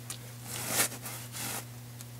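A hand wiping across wet, soap-scummed glass mosaic tile, making two brief swishing strokes, one in each second.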